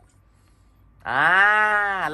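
Near quiet for about a second, then a young man's long, drawn-out vocal sound, held for about a second with its pitch rising and then falling.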